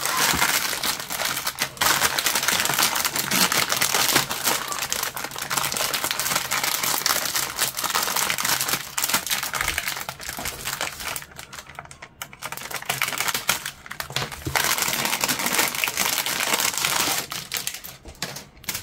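Clear plastic bag crinkling as a stack of plastic model-kit sprues is handled inside it and drawn out, with scattered light clicks of the hard plastic sprues knocking together. The crinkling eases off for a few seconds past the middle, then picks up again.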